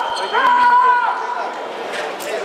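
A fencer's held shout of about two-thirds of a second after a sabre touch, rising at its start and dropping off at the end, with a few soft footfalls.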